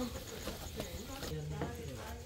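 Faint background voices over a low steady hum, with a few light clicks.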